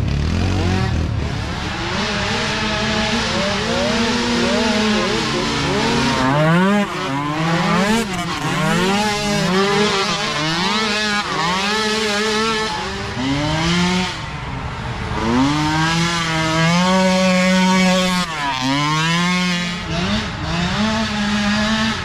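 Small micro-ATV race quad engines revving up and down as the riders open and close the throttle through a trail section. The pitch rises and falls every second or so, and at times two engines are heard at once.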